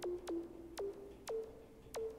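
An electronic pattern playing back from the Modstep sequencer at 120 BPM: one note every half second, each a quick downward pitch drop that settles into a short held tone, the held pitch shifting a little from note to note.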